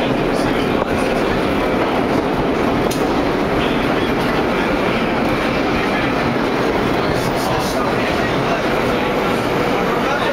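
Vintage New York City subway car running in service, heard from inside the car: a loud, steady rumble of wheels and car body, with a few clicks from the rail joints.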